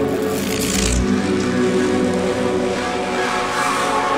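Intro of a neurofunk drum and bass track: layered sustained synth drones and pads with no beat yet. A hissing noise sweep and a short deep sub-bass hit come about a second in.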